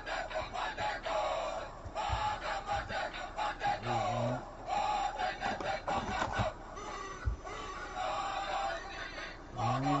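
Trading cards being handled on a table: scattered light taps and rustling, with a few soft knocks.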